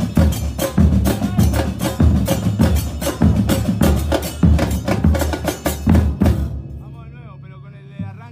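Football supporters' drum band, several drums played together in a fast, driving rhythm. It stops abruptly about six seconds in, leaving faint voices in the background.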